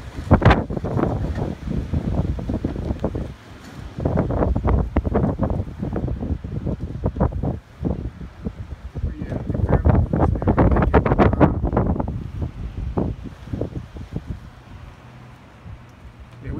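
Strong, gusty wind buffeting the phone's microphone in surges. The gusts come in the first three seconds and again from about four seconds in, are strongest around ten to twelve seconds, and ease off near the end.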